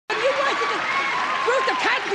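Studio audience applauding, with a voice talking over the clapping.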